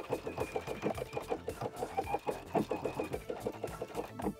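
Domestic sewing machine stitching back and forth through overlapped elastic: rapid, even needle ticks under the motor's high whine, which dips briefly about halfway through.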